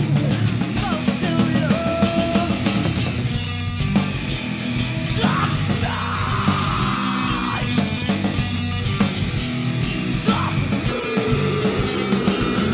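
Live metal band playing loud: distorted electric guitars, bass guitar and drums, with yelled vocals over it.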